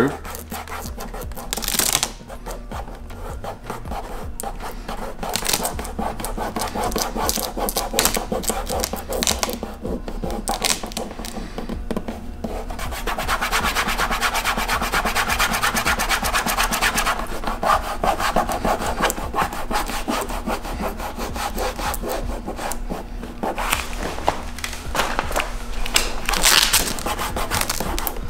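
A thumb rubbing vinyl tint film down onto a plastic headlight lens, squeegee-style: a continuous run of dense friction strokes, loudest for a few seconds around the middle.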